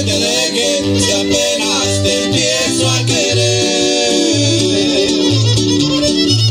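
A Huasteco string trio playing live: strummed guitars with a plucked bass line that repeats steadily, and a violin melody.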